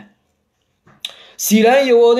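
About a second of dead silence, broken by a sharp click and a brief hiss. Then a man's voice comes in holding a long, steady note, like chanting.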